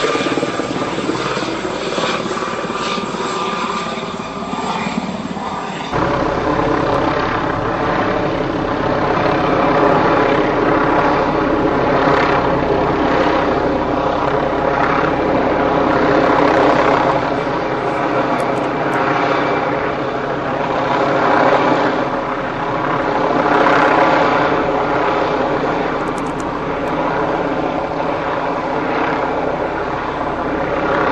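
Tandem-rotor CH-47 Chinook helicopter flying low, its rotors and turbine engines making a steady, loud sound that swells and fades every couple of seconds. About six seconds in the sound changes abruptly and a deeper low rumble comes in.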